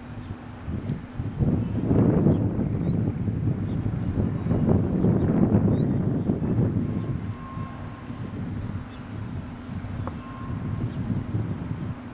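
Wind buffeting the microphone in uneven gusts, a low rumble that is strongest in the first half. Two short rising chirps come through, about three seconds apart.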